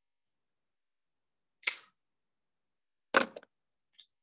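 Two brief clicks against near silence: one about a second and a half in, and a sharper double click just after three seconds.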